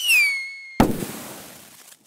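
Logo sting sound effect: a whistle that falls in pitch and levels off, then a sudden loud bang less than a second in, with a crackling, hissing tail that fades away.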